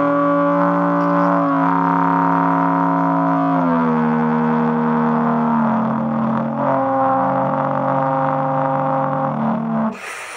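Music: a sustained wind-instrument drone sounding several pitches at once (multiphonics). The pitches step down about a third of the way in, shift again past halfway, and stop just before the end.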